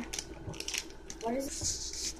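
A glass jar filled with rice being handled and set down on a table: a few small knocks and rustles in the first second, a brief faint voice about halfway through, and a short hiss near the end.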